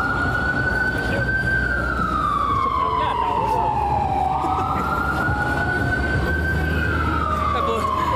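Emergency vehicle siren wailing on a city street: the pitch holds high, slides slowly down, jumps quickly back up about four seconds in, holds, and slides down again. A low traffic rumble runs underneath.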